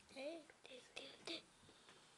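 Quiet whispering and soft murmured voice in the first second and a half, then a faint near-silent room.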